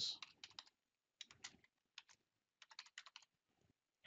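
Faint keystrokes on a computer keyboard, typing a name in a few quick runs of clicks with short pauses between.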